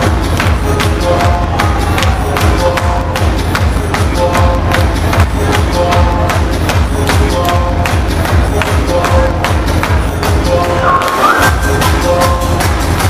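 Hardstyle dance music played loud over a club sound system, with a steady fast kick drum under a repeating synth melody. Near the end the kick drops out for about a second while a synth note steps upward, then the beat comes back.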